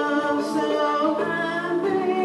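A man and a woman singing a gospel song together as a duet through handheld microphones, with long held notes.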